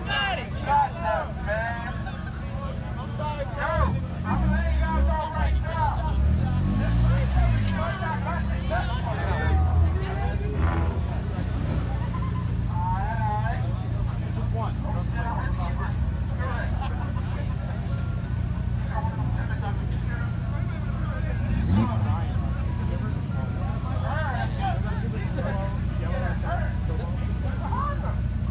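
Car engines rumbling at idle, with one revved up and down several times about four to eight seconds in and briefly again near the end, under the loud chatter of a large crowd.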